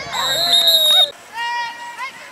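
A referee's whistle blows one steady shrill note for about a second as a tackle ends the play, over shouting from the sideline. A short held shout follows.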